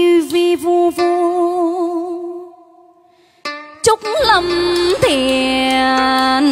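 A woman singing long, wordless held notes with vibrato into a handheld microphone. The first note fades out about three seconds in, and a new held note over backing music starts about a second later.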